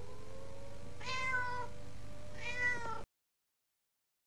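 A cat meowing twice, each meow about half a second long, over a faint held note. The sound then cuts off suddenly about three seconds in.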